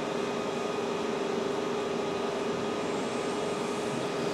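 Steady background hum and hiss with one constant mid-pitched tone running unchanged, heard in a pause between recited verses.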